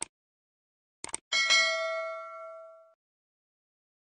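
Subscribe-button sound effect: a mouse click, then a quick double click about a second in, followed by a bright notification-bell ding that rings out and fades over about a second and a half.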